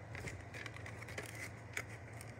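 Plastic VHS clamshell case being handled and turned over: a few short clicks and rustles of plastic, the sharpest near the end.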